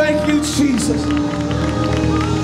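Gospel church music with long held chords, and voices calling out over it.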